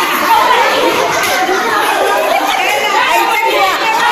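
A crowd of women and children talking and calling out at once, many voices overlapping.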